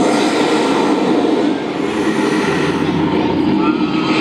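Tyrannosaurus rex roar sound effect played over the arena's sound system: a long, low, rumbling growl that holds steady for the whole stretch.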